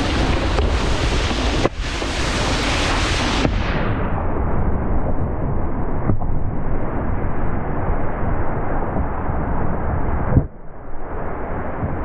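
Wind buffeting an action camera's microphone, mixed with the rush of a wakeboard over water, as the rider is towed by the cable: a loud, steady noise with heavy rumble. About three and a half seconds in the sound turns duller, and after a break near ten and a half seconds it goes on quieter.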